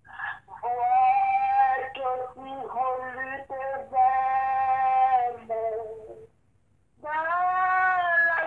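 A solo voice singing slowly, holding long sustained notes in phrases. It breaks off briefly about six seconds in and resumes about a second later.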